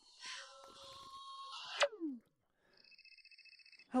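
Faint muffled film audio for about two seconds, ending in a short falling sound. Then a phone rings with a fast warbling trill for about a second.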